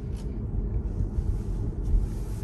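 Steady low road and tyre rumble inside the cabin of a Tesla electric car pulling away at about 20 mph, with no engine note. There is a brief low thump near the end.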